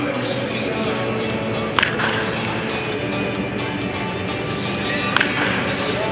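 Baseball bat striking pitched balls in batting practice: two sharp cracks, one about two seconds in and another near the end, over background music.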